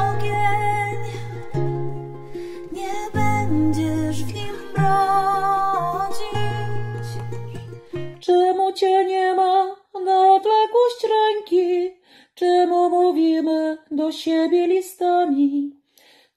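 Acoustic guitar and ukulele playing under a woman's singing. About eight seconds in, the instruments stop and a woman's voice goes on singing alone, unaccompanied, in short phrases.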